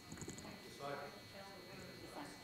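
A faint, distant voice from the congregation answering the pastor's question, with a few light clicks near the start.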